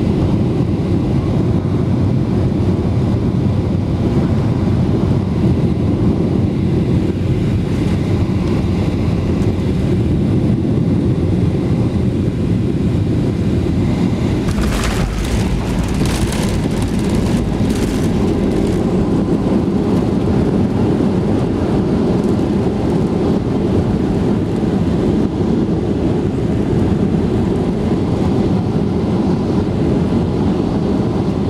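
Cabin noise of a Boeing 737-800 landing, heard from a window seat over the wing: a loud, steady rumble of engines and airflow. About fifteen seconds in, a short cluster of knocks and rattles comes as the wheels touch the runway, and the rumble carries on through the rollout.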